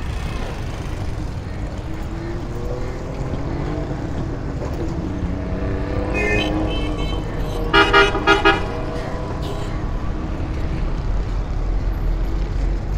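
Street traffic of auto-rickshaws and motorbikes over a steady low rumble, with engine pitch rising and falling as vehicles pass. A vehicle horn sounds a quick run of about four short beeps about eight seconds in, the loudest thing heard.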